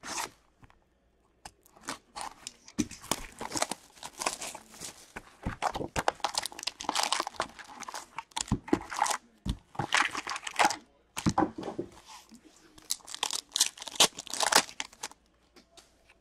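Hockey card packs being torn open by hand, their wrappers ripping and crinkling in a run of irregular bursts.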